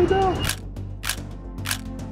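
A man's voice ends just after the start. Then come three short, sharp noisy clicks about half a second apart over quiet background music.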